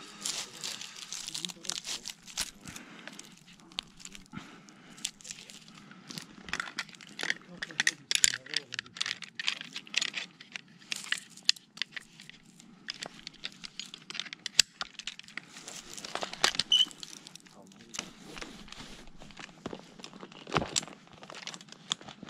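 Climbing rope and metal rigging hardware handled against a pine trunk: irregular rustling and scraping of rope on bark, with many scattered sharp clicks and crackles.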